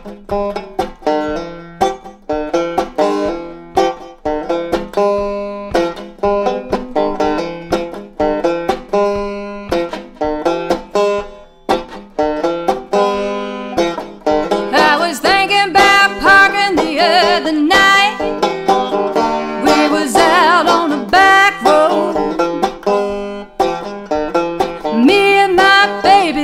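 Five-string resonator banjo played solo in a steady, rolling stream of picked notes over a ringing low drone, an instrumental intro that gets louder and busier about halfway through. The player calls the banjo out of tune.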